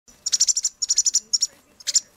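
Fledgling American robin giving rapid, high begging chirps with its beak gaping, in three or four quick bursts of several notes each: a young bird calling to be fed.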